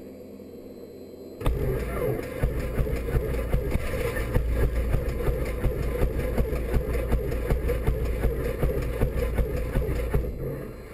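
The starter motor of a Robin light aircraft cranks its piston engine. The cranking starts suddenly about a second and a half in and goes on in regular pulses for over eight seconds without the engine catching.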